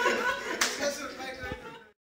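People's voices and chatter in a room, with one sharp smack a little over half a second in. The sound fades out just before the end.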